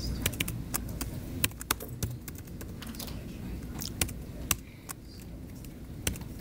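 Typing on a computer keyboard: irregular key clicks, a few of them louder than the rest.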